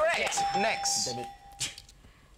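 Electronic bell-like chime sound effect, a single steady tone that starts about a third of a second in and holds for about a second and a half before stopping. It marks a correct guess in a charades round.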